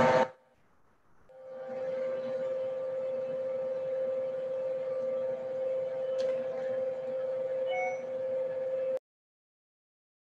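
Electric stand mixer motor running at a steady pitch with a strong hum as it mixes the challah dough ingredients; it fades in about a second in and cuts off suddenly near the end.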